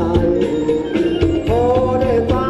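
Live band playing Thai ramwong dance music: a gliding sung melody over drums with a steady beat and a strong bass.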